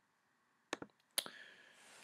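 Computer mouse button clicks: a quick double click a little under a second in, then a single sharper click about half a second later, as the video player's play/pause control is worked.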